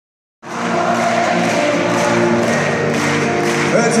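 A live acoustic band plays music in a large concert hall, with crowd noise underneath. The sound starts abruptly about half a second in. A voice comes in singing near the end.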